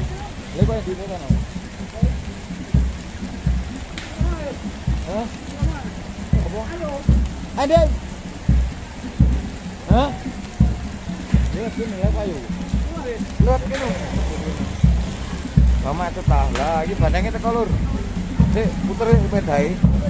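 Bantengan procession music: a big drum beating steadily, about three beats every two seconds, with voices calling over it and rain falling throughout.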